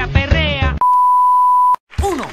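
A voice over a music track, cut off less than a second in by a loud, steady electronic beep tone held for about a second, which stops abruptly.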